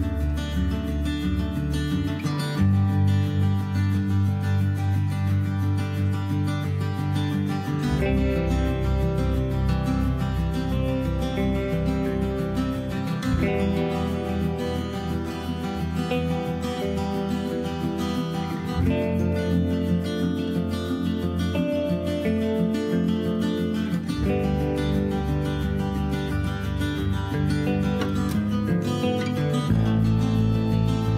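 Background music led by strummed acoustic guitar, its chords and bass changing about every five seconds.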